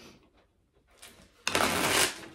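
A deck of tarot cards being riffle-shuffled: a sudden, fast run of card flicks starting about one and a half seconds in, after a near-quiet stretch with a faint tap.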